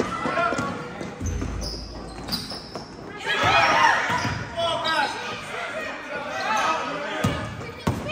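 A basketball dribbled on a gym floor among the voices of players and spectators, the voices growing louder about three seconds in, with a couple of sharp knocks near the end.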